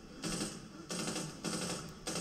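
Soundtrack of the TV episode playing quietly: a run of three or four short, harsh bursts of noise, each about half a second long.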